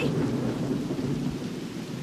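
Heavy rain pouring steadily, with a low rumble of thunder underneath that eases a little toward the end.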